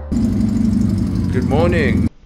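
Motorcycle engine running loud with a rapid, rough pulse, starting abruptly; a man's voice shouts briefly near the end.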